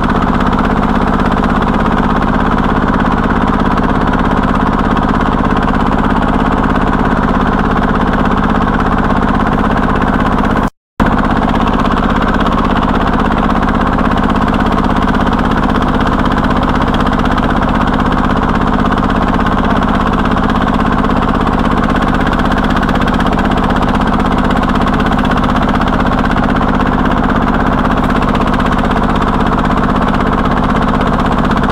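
Single-cylinder diesel engine of a công nông farm cart running steadily under heavy load as it hauls a full load of firewood up a dirt slope. The sound breaks off for a moment about eleven seconds in.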